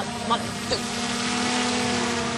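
Bee buzzing sound effect: a steady low drone with a rushing swell, loudest about a second and a half in, as of a bee flying past.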